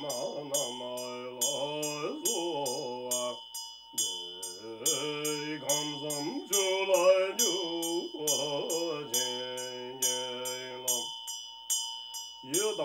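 A man's low voice chanting a mantra in long sung phrases, broken by two short pauses, over a Tibetan ritual hand bell (drilbu) rung continuously in a quick, even rhythm of about three strokes a second, its high tones ringing on between strokes.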